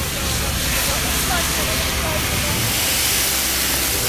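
Fire extinguisher discharging in a steady hiss onto flames in a fire tray, with a low rumble underneath.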